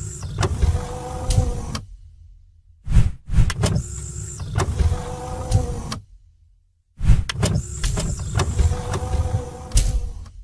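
A mechanical sound effect from an animated bumper, played three times in a row: each time a clunk and a whirring motor-like slide with a steady hum, about three seconds long, with short silent gaps between.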